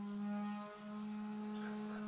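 Electric power sander running as a faint, steady hum, dipping briefly just under a second in.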